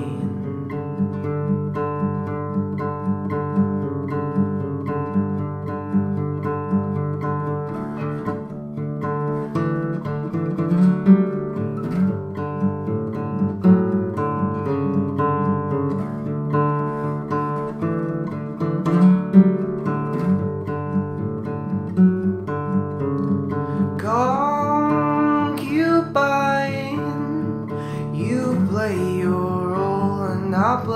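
Instrumental passage of an indie folk-rock song: acoustic guitar picking and strumming steadily, with a higher sliding melody line coming in near the end.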